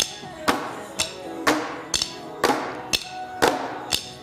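Plastic fitness drumsticks striking in time to workout music, a sharp hit about twice a second.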